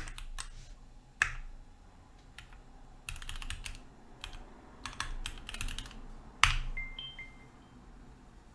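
Computer keyboard typing in short bursts of keystrokes, then one louder single keystroke about six and a half seconds in, the Enter key running the typed command. A faint, brief high tone follows.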